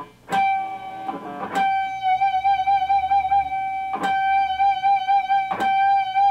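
Electric guitar natural harmonic at the fifth fret of the G string, ringing as a high G, picked about four times and sustained between strikes. The tremolo bar puts a slow wavering vibrato on the note.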